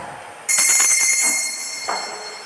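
Altar bells rung about half a second in: a bright, high ringing that rattles briefly as the bells are shaken, then rings on and slowly fades. Rung at the epiclesis, the signal that the consecration is about to begin.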